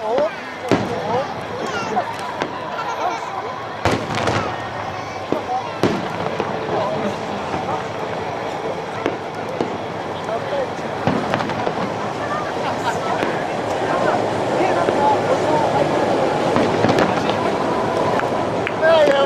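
Aerial firework shells bursting, a series of bangs at irregular intervals, with spectators talking nearby.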